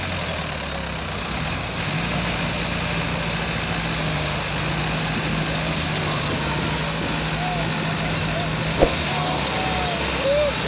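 Massey Ferguson tractor diesel engine running at a steady speed, with voices in the background near the end and one sharp knock shortly before the end.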